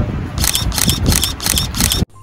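Camera shutter clicking in a rapid burst, about five or six clicks a second, starting just under half a second in: a photographer shooting a quick series of frames.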